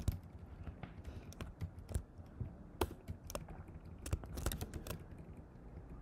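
Typing on a computer keyboard while editing code: quick, irregular key clicks, with a denser run of keystrokes around four to five seconds in.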